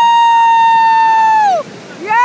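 A loud, high-pitched shriek held on one note, which falls away about one and a half seconds in, with a second shriek starting just at the end. Surf washes faintly underneath.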